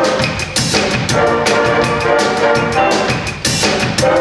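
A high school stage band playing live: saxophones, trombones and trumpets in sustained chords over a drum kit keeping a steady beat, with short breaks about half a second and three and a half seconds in.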